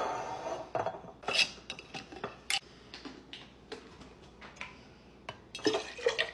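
Glass mason jars and plastic breast-pump parts handled on a kitchen counter: a string of sharp clinks and knocks, with a louder clatter at the start as a jar is set down.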